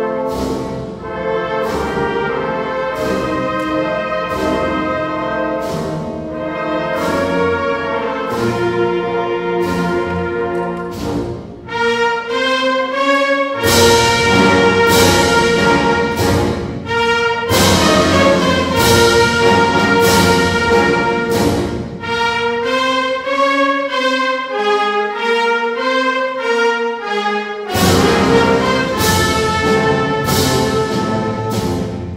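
Spanish wind band (banda de música) of brass, saxophones and percussion playing a Holy Week processional march, sustained brass chords over regular drum strokes. The full band swells louder partway through, thins to a lighter passage without the low brass, then comes back in at full strength near the end.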